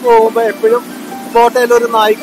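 A man talking continuously over the steady low hum of a boat's motor running under way.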